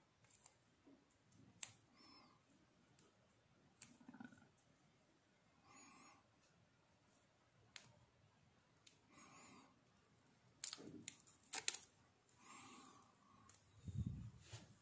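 Near silence with faint handling noise: scattered small clicks and soft rustles as fingers position a small component and wire leads on a circuit board, the loudest a pair of sharp ticks roughly 11 seconds in.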